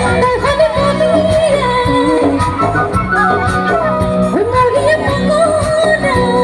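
A woman singing an Assamese song live into a microphone with band accompaniment, her voice holding and gliding between notes over a steady beat.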